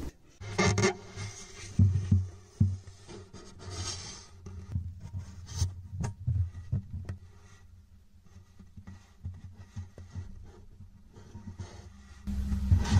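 Handling noise against a wooden guitar body: irregular light knocks, clicks and rubbing that are busiest early and thin out toward the end, as a camera is worked inside the acoustic guitar to view the bridge plate.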